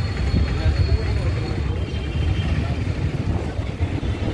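Steady low rumble of street traffic, with faint voices in it.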